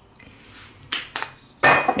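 A few light clinks against a glass mixing bowl while rice vinegar is added to cooked rice: two small clicks about a second in, then a louder clink with a brief ring near the end.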